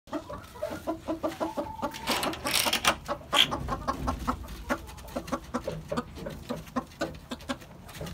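Chickens clucking: a run of short, quick clucks repeating several times a second. A louder rustling burst comes about two seconds in.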